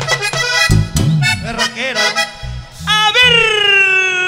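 Vallenato button accordion playing quick runs of short notes with the live band. About three seconds in a long held note begins, sliding down in pitch at its start, which is the singer's sung call over the accordion.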